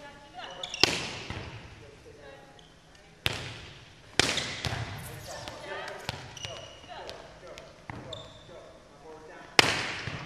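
Volleyballs being hit and dug in a gym: four loud smacks of the ball off hands and forearms, about a second in, twice near the middle and once near the end, each with a hall echo, between smaller knocks of balls bouncing on the hardwood floor.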